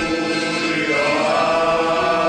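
Male voice choir singing in harmony, holding long notes that change pitch about once a second.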